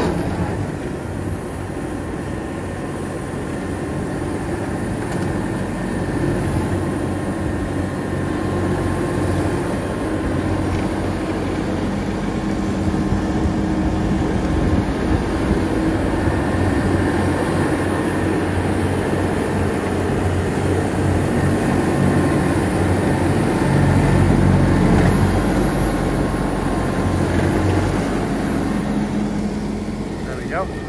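JCB Fastrac tractor running under load, driving a front-mounted, direct-driven Major rotary mower that chews through a wet quadrant bale of wheat straw. The engine and mower noise builds steadily and is loudest about three quarters of the way through.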